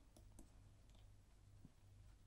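Near silence with a few faint, scattered clicks: a stylus tapping and writing on a pen tablet.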